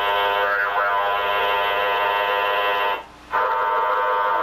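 Spiricom's multi-tone generator giving a steady buzz of many tones sounding together, which cuts out briefly about three seconds in.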